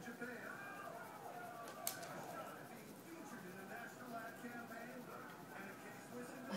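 Faint, indistinct voices talking in a small room, with one sharp click about two seconds in.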